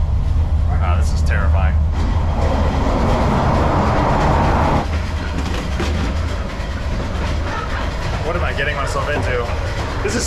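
Passenger train carriage running: a steady low rumble of wheels on rails throughout. From about two seconds in, a louder rush of wheel and track noise comes in through an opened connecting door and cuts off suddenly near five seconds.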